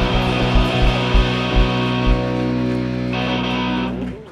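Live rock band with electric guitars, bass guitar and drums, loud: a run of heavy drum hits over held chords, then the chord rings on alone and the band cuts off together near the end, closing the song.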